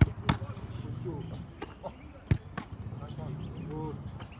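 Several sharp thuds of a football being kicked and caught, the loudest right at the start and again a little over two seconds in, with quieter knocks between.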